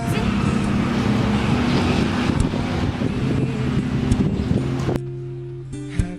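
Steady outdoor street traffic noise under soft background music. The traffic noise cuts off abruptly about five seconds in, leaving only the music.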